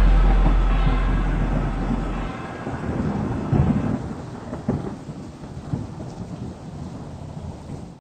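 A low rumbling noise, loud at first and fading over the whole stretch. A deep held low tone underneath it stops about two seconds in, and a few deeper booms come later.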